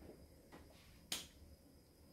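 Near silence, broken by a single sharp click just over a second in.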